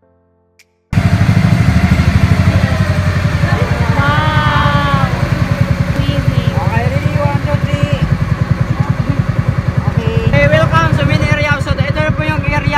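A boat engine running steadily at close range, cutting in suddenly about a second in, with people talking over it.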